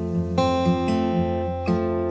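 Two acoustic guitars playing together without voice, with fresh notes struck about half a second in and again near the end.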